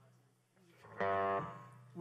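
Electric guitar through a stage amplifier, struck once about a second in and left to ring, fading away, over a low steady amp hum.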